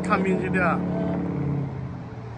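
A woman talking briefly, with a steady low engine hum of a passing vehicle underneath that fades out near the end.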